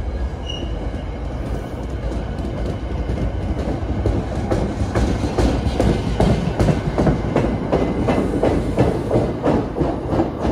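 New Jersey Transit Comet V commuter cars rolling past close by, their wheels clattering over rail joints. The clacking grows louder and denser through the second half as the last cars and the rear cab car go by.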